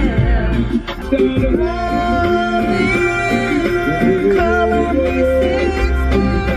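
A song with a singing voice playing on the car radio.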